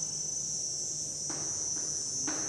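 Steady high-pitched insect chirring, like crickets, with a soft scratch of chalk on a blackboard a little over a second in.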